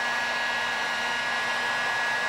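Electric heat gun running steadily, a constant rush of air with a steady high whine from its fan motor.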